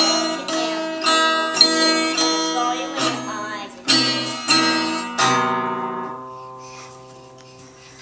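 Child-size acoustic guitar strummed in chords, a stroke about every half second. About five seconds in, a final chord is left to ring out and fade away at the end of the song.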